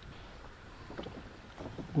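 Faint sounds on a small boat on calm water: low water and wind noise, with a few light clicks about a second in and near the end.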